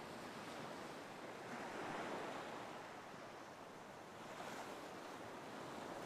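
Faint ocean surf: a soft, steady wash of waves that slowly swells and eases.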